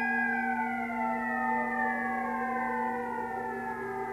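A steady drone of held tones, with several higher tones slowly falling in pitch.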